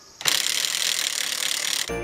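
A hand ratchet being worked in a quick run of clicks lasting about a second and a half, tightening a wire that pulls in the bent wall of a plastic water tank.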